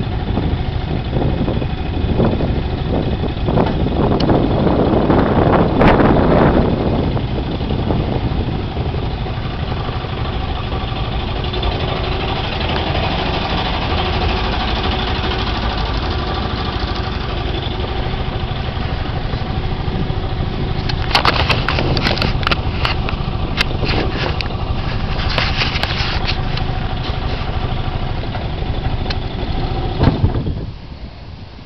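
Small boat outboard motor running steadily, swelling louder for a few seconds early on and then settling, with a run of sharp clicks and knocks about two-thirds of the way through.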